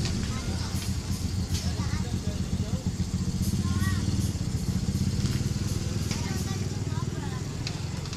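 Standing ex-JR East 205 series electric commuter train giving a steady low hum from its idling equipment.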